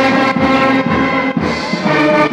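Brass band playing march music with a steady beat, about two beats a second.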